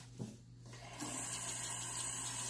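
Bathroom sink tap turned on about a second in, then water running steadily from the faucet into the basin.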